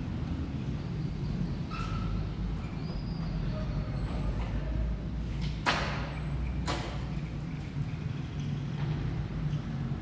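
Steady low rumble of road traffic, with two short hisses about a second apart near the middle.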